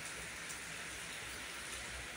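Steady rain falling on a wet concrete rooftop floor, its puddles and garden plants: an even, unbroken hiss.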